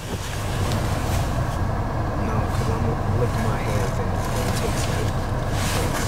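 Steady low hum inside a parked car's cabin with the engine idling.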